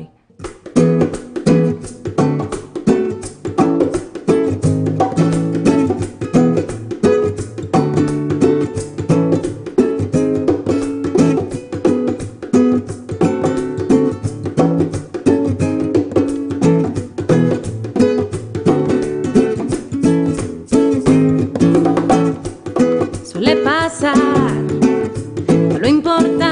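Acoustic guitar played as a song's introduction, a steady run of plucked notes and chords. A woman's singing voice comes in over it near the end.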